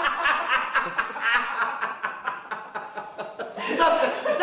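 A man laughing hard, a long run of quick chuckles with no words, getting louder again near the end.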